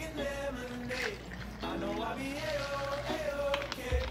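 Background music with a held, wavering melody line, with a carbonated soda faintly pouring into a glass over ice underneath.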